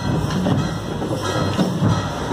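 Drums beaten rapidly with sticks, playing a fast, steady, clattering rhythm.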